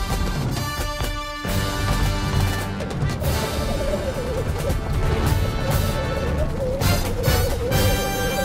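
Loud action film score mixed with repeated crashing impact sounds, the heaviest about a second in.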